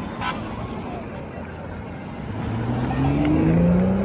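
A motor vehicle's engine accelerating over road noise. It begins about halfway through, rises steadily in pitch and is loudest near the end.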